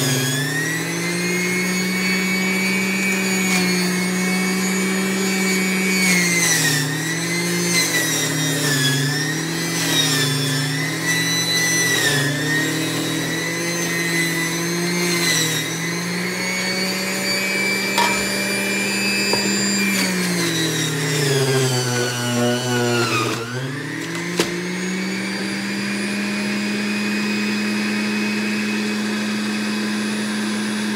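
Centrifugal juicer motor running with a loud whine as celery stalks are pushed down the feed chute. The pitch sags and recovers each time a stalk is pressed in, bogs down deeply a little past two-thirds through, then spins back up and holds steady.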